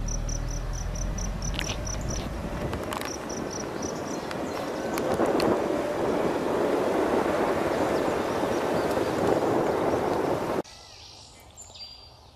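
Wind rushing and buffeting on a moving microphone, with a low hum under it for the first couple of seconds and an insect chirping about six times a second at the start. The rushing cuts off suddenly near the end, leaving a much quieter outdoor background.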